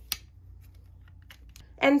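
A sharp plastic click as the lid of a Blinger gem-styling tool is snapped shut just after the start, followed by a few faint clicks of the plastic tool being handled.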